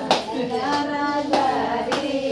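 A group of people singing with held, wavering notes, cut by three sharp claps, one right at the start and two more near the end.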